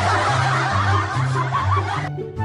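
A burst of canned crowd laughter over light background music, starting abruptly and cutting off sharply after about two seconds.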